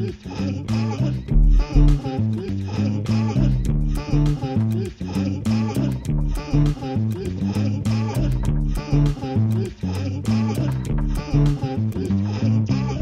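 Electronic music played live on synths and machines: a deep bass line repeating in a steady rhythm under a recurring melodic figure.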